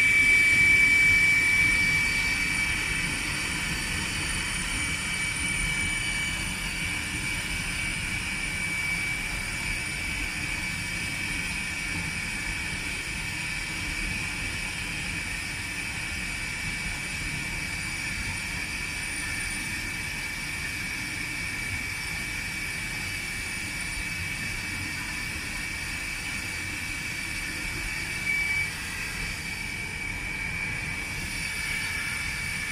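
Aero L-29 Delfín's Motorlet M-701 turbojet running at ground idle: a steady high whine over a low rumble. It is loudest for the first couple of seconds, then settles to an even level.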